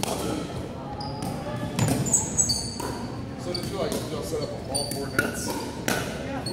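Pickleball rally: solid paddles knocking the hollow plastic ball back and forth in a string of sharp pops, with shoes squeaking briefly on the hardwood floor. The hits echo in the large gym hall.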